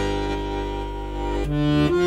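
Accordion playing long held chords over a bass note, moving to a new chord about one and a half seconds in.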